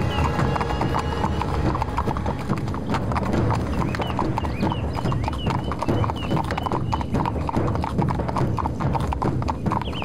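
Hooves of several horses beating on a dirt track, a dense, continuous clatter of hoofbeats as the riders move at speed.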